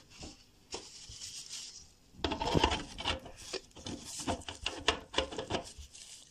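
Rustling and rubbing of a plastic glove and paper towel against a popcorn maker's plastic lid as it is handled and fitted, with a quick run of small clicks and knocks. It starts about two seconds in.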